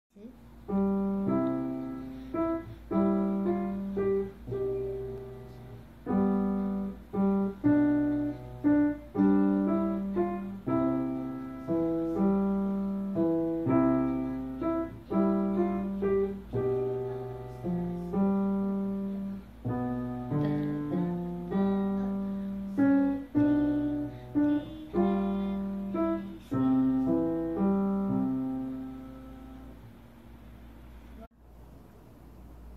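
Grand piano played at an even pace: a simple melody over a lower accompaniment, each note struck and left to die away, closing on a held note that fades out near the end. A faint low hum runs underneath.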